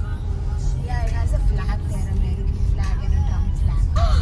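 Car cabin road noise while driving on a gravel road: a steady low rumble from the tyres and engine, with faint voices over it.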